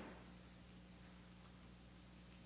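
Near silence: room tone with a low steady hum, and one faint knock right at the start.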